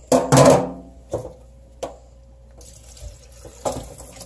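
Water splashing and pouring in a stainless steel sink as a cut-open plastic fish bag is emptied, with a loud splash and rustle at the start, a few sharp knocks against the sink, and a light pouring trickle near the end.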